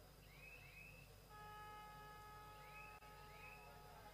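Near silence: faint short rising chirps repeating about once a second, and from just over a second in a faint steady tone of several pitches held to the end.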